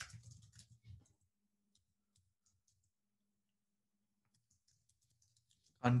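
Computer keyboard typing, faint: scattered soft key clicks, with a gap of about a second in the middle.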